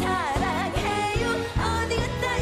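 A woman singing a Korean trot song live with a backing band and a steady drum beat, her voice swinging in wide vibrato on a long note near the start before moving on through shorter held notes.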